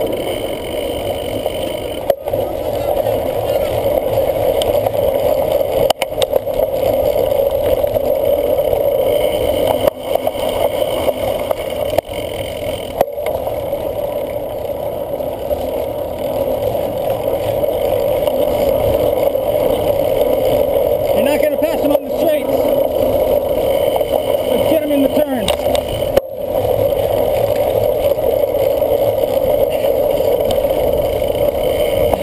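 Steady rumble of a cyclocross bike riding over a bumpy grass course, picked up by a handlebar-mounted camera with wind on its microphone, broken by a few short dropouts.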